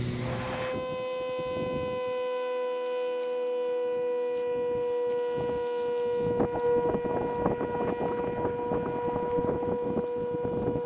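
A gas stove's burner hiss cuts off about half a second in, and a steady unwavering tone with overtones sets in and holds. From about five seconds in come light crinkling and clicks of a paper coffee sachet being torn open and emptied into a steel mug.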